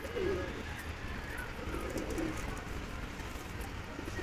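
Domestic pigeons cooing softly, a few low coos near the start and again about two seconds in.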